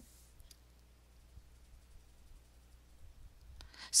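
A faint computer-mouse click, then a fainter second click about half a second later, over quiet room tone with a low hum.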